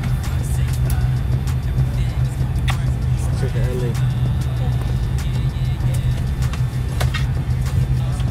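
Steady low drone of an airliner cabin at the gate, with faint scattered clicks and a brief murmur of voices.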